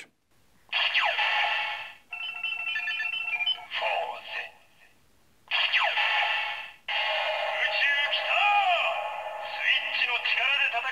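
Bandai DX Fourze Ridewatch toy playing its electronic sounds through its small speaker, thin and tinny with no bass. A sound effect plays, then a short beeping jingle, then a second sound effect like the first. From about seven seconds in a recorded voice line plays over music, the line 'Space is here! The rider who fights with the power of switches is...'.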